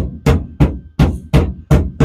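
Light hammer taps on the edge of a new sheet-steel floor pan, about five sharp strikes at an even pace, easing the panel down flat onto the floor to close the gap before it is tack welded.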